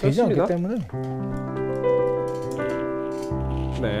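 Native Instruments 'The Grandeur' sampled grand piano in Kontakt, played from a MIDI keyboard: notes struck one after another and held into a sustained chord, with a low bass note added near the end. It is a check that the MIDI connection to the virtual piano works.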